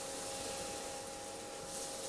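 Butter sizzling faintly and steadily in a frying pan under a toasting sandwich, with a faint steady whine beneath it.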